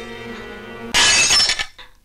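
Film-score music holding steady notes, then about a second in a window pane shatters with a loud crash of breaking glass that dies away within about half a second.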